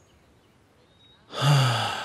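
A man sighing once, long and heavy, starting about a second and a half in, the breath falling in pitch as it fades.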